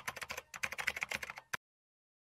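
Keyboard-typing sound effect: a fast run of crisp key clicks, about a dozen a second, that cuts off abruptly about one and a half seconds in, leaving dead silence.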